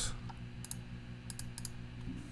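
A handful of sharp computer mouse and keyboard clicks, some in quick pairs like a double-click, over a low steady hum.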